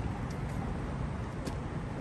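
Steady outdoor background noise with a low rumble, with two faint ticks about a quarter-second and a second and a half in.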